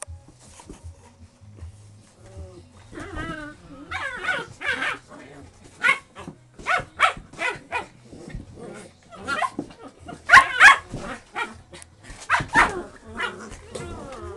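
English Springer Spaniel puppies play-fighting, giving a quick string of short barks, yips and growls that starts a few seconds in and peaks twice in the second half.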